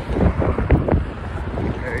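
Wind buffeting the microphone: a loud, low rumble that swells and dips in gusts.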